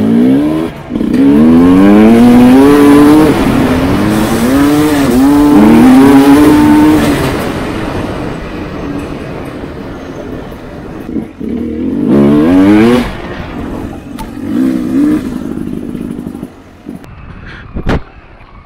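Sherco SE300 Factory 300cc two-stroke enduro motorcycle accelerating hard, its pitch rising in quick steps through several gears for the first several seconds, then easing off. It pulls hard again twice around two-thirds of the way in, then quietens near the end.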